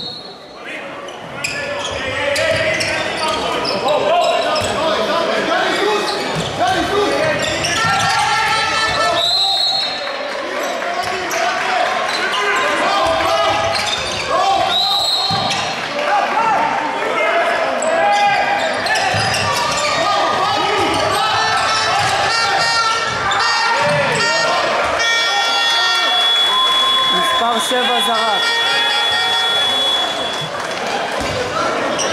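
Handball game sounds in an echoing sports hall: the ball bounces on the hardwood court while players and spectators shout and chatter. A referee's whistle gives two short blasts, about ten and fifteen seconds in. A held high tone sounds for a few seconds near the end.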